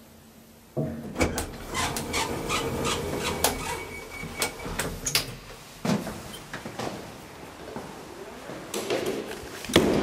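Elevator car door and landing door being opened by hand at a floor: a sudden clatter about a second in, then rattling and clicking for a few seconds, another knock near six seconds, and a loud clunk near the end.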